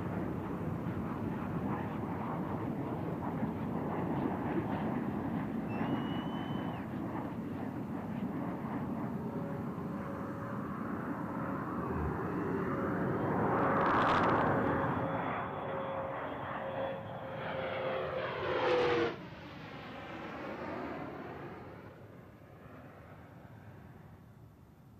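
Jet aircraft passing over the runway: a steady rushing noise that swells to its loudest about fourteen seconds in, with a whine that drops in pitch as it goes by near the end, then fades away.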